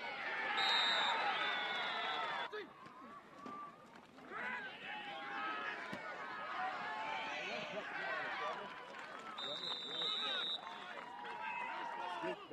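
Football crowd and sideline voices shouting and cheering together, with two long whistle blasts: one near the start lasting about two seconds, and a shorter one about nine and a half seconds in. The sound drops off suddenly about two and a half seconds in.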